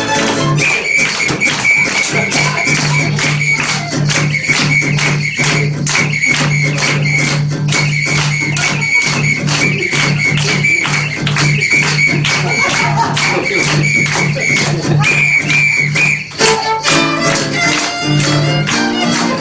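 Live music with a steady beat of sharp strikes about three a second over a held low note, a brief dip in level about sixteen seconds in.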